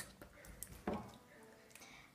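A quiet room with one light knock about a second in, as a drinking glass is lifted off a tray.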